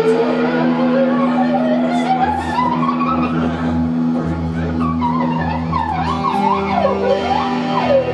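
Live psychedelic rock band playing a slow droning jam: a held low chord under a sliding lead line that rises slowly over the first few seconds, then swoops up and down in wide slides near the end. Bass notes come in about two seconds in.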